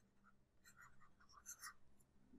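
Near silence, with faint scratching of a stylus writing on a tablet and two soft ticks about one and a half seconds in.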